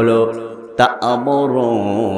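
A man's voice in the sung, chanting delivery of a Bengali waz sermon, carried through microphones, drawing out long held notes in the second half.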